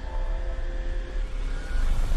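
Film-trailer sound design: a deep rumbling drone with a steady held tone above it, swelling louder near the end.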